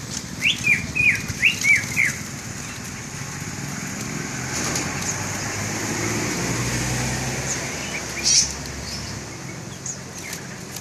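Caged songbirds chirping: a quick run of about six loud, curved notes in the first two seconds, then one sharp high call a little after eight seconds. A low rumble builds through the middle.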